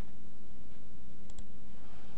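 Two quick computer-mouse clicks in close succession, a little after a second in, over a steady low electrical or ventilation hum.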